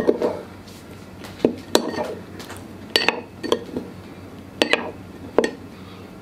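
Metal spoon stirring a dark liquid sauce in a small ceramic bowl, clinking against the bowl's side several times at uneven intervals.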